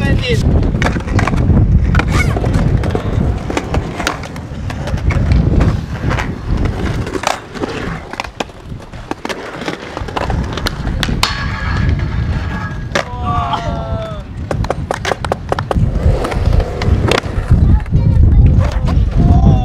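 Skateboard wheels rolling over concrete with a heavy rumble, broken by sharp clacks of the board and trucks hitting the ground and ledges; the rolling eases off near the middle and picks up again toward the end.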